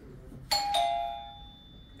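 A two-note ding-dong chime, a higher note then a lower one a quarter second later, each ringing on and fading over about a second.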